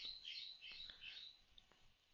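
Near silence with a few faint, short, high chirps in the first second or so.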